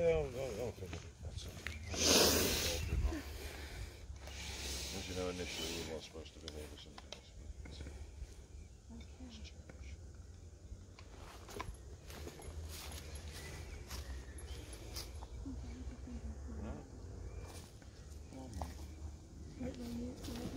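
Indistinct low voices with rustling and handling noise over a steady low rumble; a loud rustling burst about two seconds in, and a softer one a couple of seconds later.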